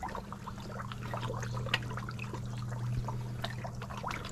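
Koi pond water splashing and trickling as hungry koi feed at the surface, with many small scattered splashes. A steady low hum runs underneath.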